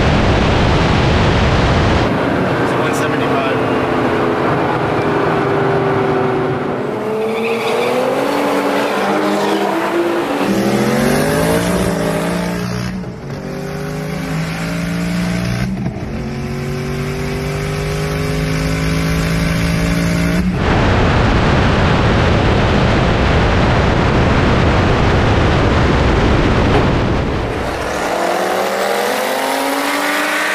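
Cars racing at highway speed. Heavy wind rush at first, then a car engine under full throttle, its pitch climbing and dropping back at two gear changes. Then wind rush again, and near the end an engine starts revving up again.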